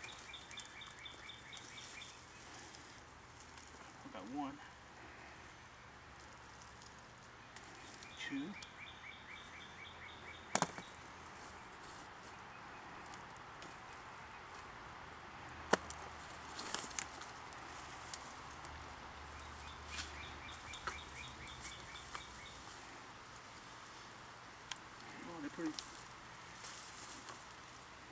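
A bird's pulsed trill repeating three times over quiet garden background, with the handling of potato plants and soil in a plastic pot and two sharp clicks, one about ten seconds in and one about sixteen seconds in.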